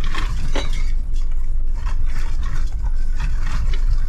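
Jeep driving slowly over a loose-rock trail, heard from inside the cab: a steady low rumble of engine and tyres with scattered clicks and rattles, one sharper knock about half a second in.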